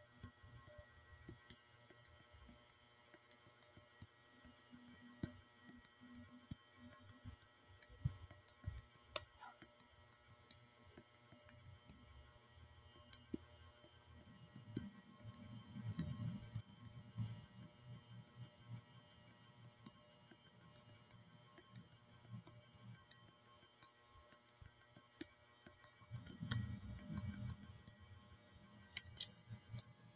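Near silence: faint room tone with scattered light clicks and two short stretches of low murmur, one about halfway through and one near the end.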